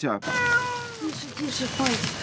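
A domestic cat trapped under the rubble of a bomb-wrecked house, meowing: one long meow just after the start that falls slightly in pitch, followed by softer, shorter cries.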